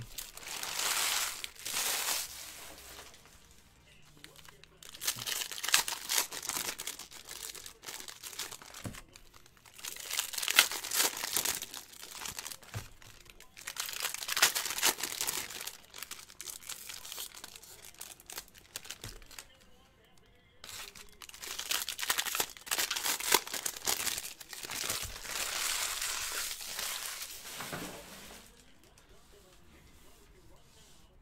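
Foil trading-card pack wrappers crinkling and tearing as packs are ripped open by hand, in repeated bursts a few seconds long with short pauses between them.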